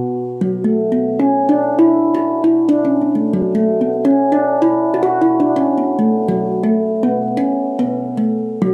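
Zen handpan tuned to B Celtic minor, played with the fingers: a steady run of struck notes, several a second, each ringing on and overlapping the next, over a sustained low tone.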